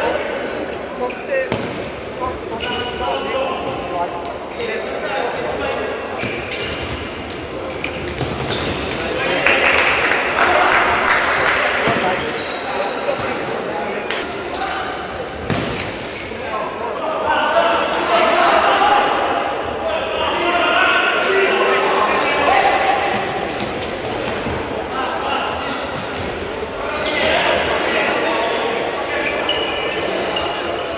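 A futsal ball being kicked and bouncing on an indoor court, repeated sharp knocks echoing in a large hall, under players' and spectators' shouts and chatter that swell several times.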